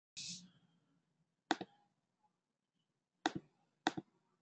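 Quiet computer mouse clicks: three sharp clicks about a second and a half, three and a quarter, and four seconds in, each a quick double tick. A short hiss comes just before the first.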